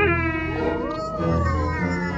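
A drawn-out animal-like vocal call over background music: it starts suddenly, then its pitch rises and slowly falls.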